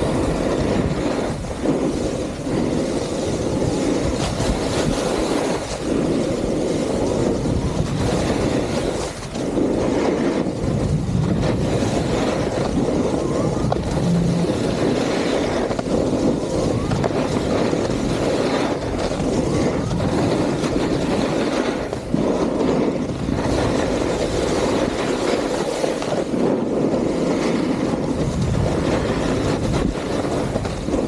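Snowboard sliding at speed over groomed piste snow: a steady rushing scrape mixed with wind on the microphone.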